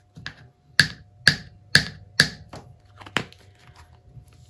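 A series of about seven sharp taps or clicks, roughly two a second, the middle ones loudest, made by something handled out of view.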